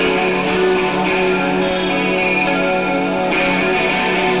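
Electric guitar playing ringing, sustained chords, the opening of a rock song played live by a band.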